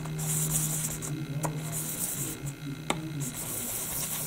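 Brass bearing plate of a French horn rotor valve rubbed in small turns on 600-grit sandpaper over a flat steel block, giving a soft scratchy rasp that comes and goes. The sanding is taking down the bearing surface so the rotor stops catching. A steady electrical hum runs underneath, with two light clicks about a second and a half apart.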